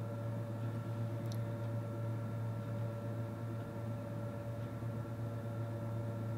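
Steady low mains hum with fainter higher tones above it, from a toroidal power transformer running a bench power supply under about a 2 amp load.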